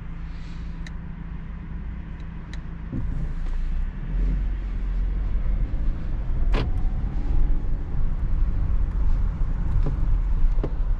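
Hyundai Creta SUV heard from inside the cabin: a steady low engine and road rumble that grows louder from about three seconds in as the car speeds up. There is a sharp click about two thirds of the way through.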